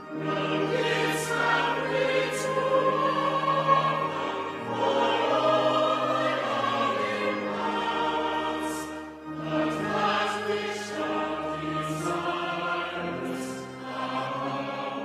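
Slow choral music: a choir singing long held notes in phrases about four to five seconds long, with short dips between them.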